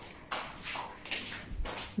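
Footsteps shuffling across a tiled floor, a soft step about every half second.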